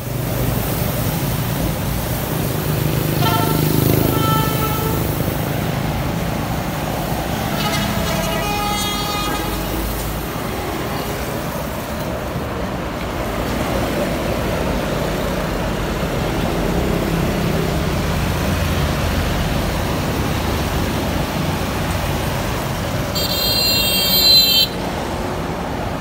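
Busy road traffic: cars, trucks and motorbikes passing steadily. Vehicle horns sound about three seconds in and again around eight seconds in, and a shrill, high horn sounds near the end.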